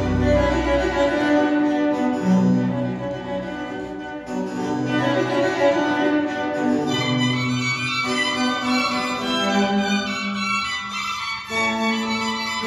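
Recorded classical music with violin and cello lines, played back through a Sonus Faber Aida floor-standing loudspeaker and heard in the listening room. Deep bass fades out about a second in, leaving sustained string notes.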